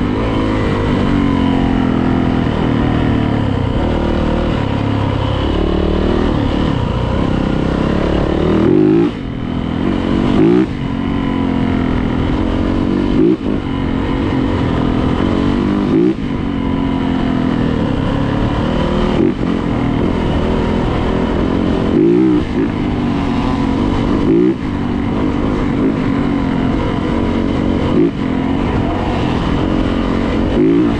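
A 2018 Yamaha YZ450F's single-cylinder four-stroke engine ridden hard along a dirt trail, the revs climbing and falling back every two to three seconds with throttle and gear changes.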